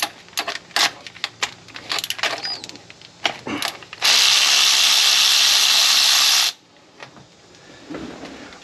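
Irregular clicks and knocks of the socket and tool being handled, then a cordless electric ratchet runs steadily for about two and a half seconds and stops suddenly, backing out a spark plug.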